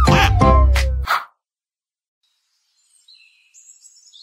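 Short children's channel intro jingle with a falling sliding tone, ending about a second in. After a gap of silence, faint high bird chirping begins about three seconds in.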